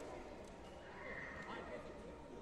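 Faint, indistinct voices echoing in a large sports hall, with a brief high-pitched tone about a second in.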